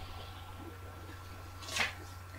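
Quiet room tone with a steady low electrical hum, and one brief soft noise near the end.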